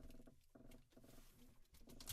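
Near silence: faint room tone.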